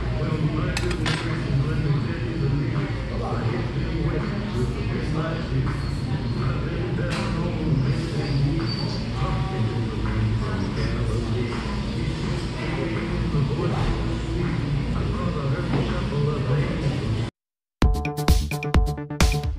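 Restaurant dining-room din: unintelligible diners' chatter over background music, with occasional clinks of dishes and cutlery. It cuts off abruptly near the end.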